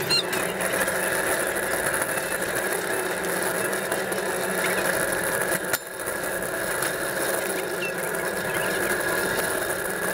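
Metal flatbed store trolley rolling over a concrete floor, its casters and wire-mesh deck rattling steadily close to the microphone, with a short knock and a brief lull about six seconds in.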